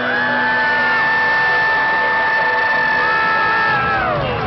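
Concert crowd cheering, with fans close by screaming long, high held notes that slide down in pitch right at the end, over band music in the background.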